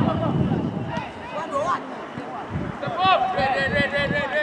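Several voices shouting and calling across an outdoor football pitch, overlapping, with the loudest shouts about three seconds in.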